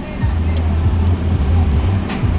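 Car engine idling, a steady low hum heard inside the cabin, with a single sharp click about half a second in.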